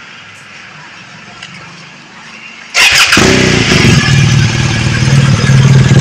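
BMW R 1250 GS HP's 1254 cc boxer twin, breathing through an aftermarket LeoVince carbon silencer, starting about three seconds in with a sudden burst as it fires, then running steadily at idle.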